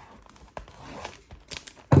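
A knife cutting and scraping through the plastic shrink wrap on a cardboard trading-card box, with a few sharp crinkles near the end.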